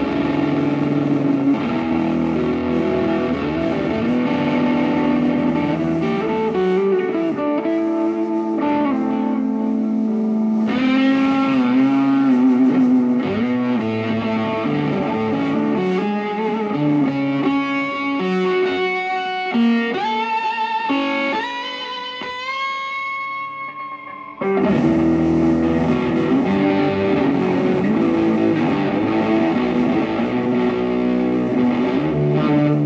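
Rock band playing live on electric guitars, bass and drums. About ten seconds in the bass and drums drop out and the guitar plays on alone in a line of climbing notes that grows quieter, until the full band comes back in suddenly and louder about five seconds before the end.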